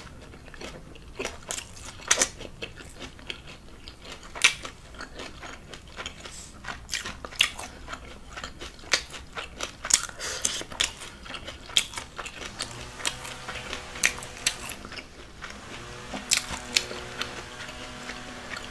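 A person chewing carne asada tacos on corn tortillas topped with onion and cilantro, close to the microphone: a run of irregular small clicks and crunches.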